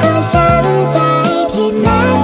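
Sped-up Thai pop song playing: a high, pitch-raised melody over a steady bass line and drums.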